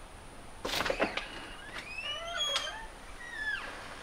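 A door latch clicks about a second in, then the door's hinges creak with drawn-out squeals that rise and fall as the door swings open.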